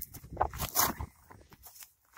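Quiet, irregular scrapes and crunches of handling and movement as wet paper is pressed onto a plastic lid: short clicks a few times a second, with no steady sound beneath.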